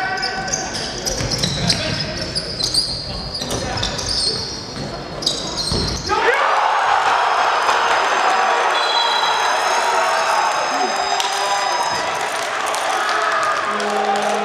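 Basketball game sound in an arena: sneakers squeaking and the ball bouncing on the court, then about six seconds in a sudden loud crowd cheer that keeps going, greeting the home side's game-tying three-pointer.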